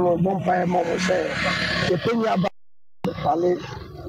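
Speech only: a woman's voice reading the news, broken about two and a half seconds in by half a second of dead silence before speech resumes.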